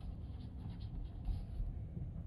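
A steady low rumble with faint scratchy rustling in the first second and a half, typical of a handheld recorder being moved about.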